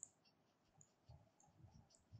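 Near silence: room tone with a few faint, short computer mouse clicks.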